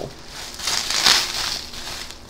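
Plastic bubble wrap crinkling and rustling as it is pulled off a wrapped plate, loudest about a second in.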